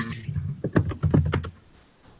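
Typing on a computer keyboard: a quick, irregular run of key clicks that stops about a second and a half in.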